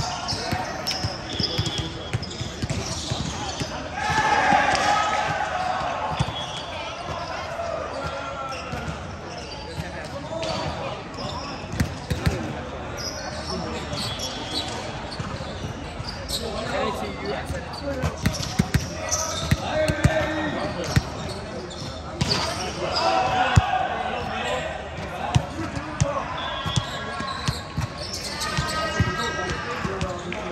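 Players' voices calling and chatting in a large reverberant sports hall, with scattered sharp ball thumps and bounces on a hard court floor.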